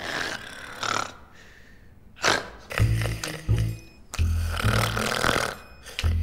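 Two sleeping men snoring. About three seconds in, music with a deep bass beat comes in over the snoring.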